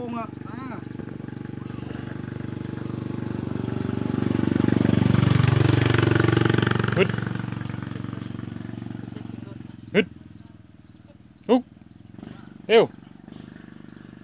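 A motor vehicle, likely a motorcycle, passes by: its engine grows louder, peaks midway with a falling pitch, and fades away. Near the end come three short, sharp calls.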